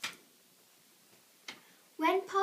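Two short, sharp clicks about a second and a half apart, the first louder, over faint room tone.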